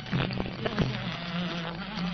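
Old film-song soundtrack: a male voice singing a held, gliding line with instrumental accompaniment.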